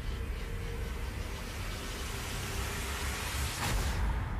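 A rushing noise with a low rumble underneath. It builds brighter and ends in a short swish about three and a half seconds in.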